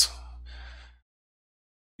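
A man's short intake of breath between spoken phrases, over a faint low hum. About a second in, everything drops to complete silence.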